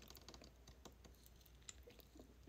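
Near silence with faint, scattered small clicks.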